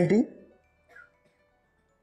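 A man's voice trailing off at the end of a phrase, then near silence with only a faint, brief sound about a second in.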